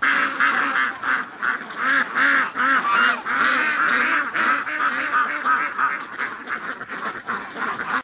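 A large flock of domestic ducks and geese calling together: a dense chorus of overlapping honks and quacks, several calls a second without a break.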